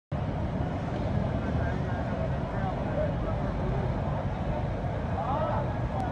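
Floodwater rushing along a street, a steady dense rumble, with auto-rickshaw engines running through the water and people's voices calling over it, most clearly about five seconds in.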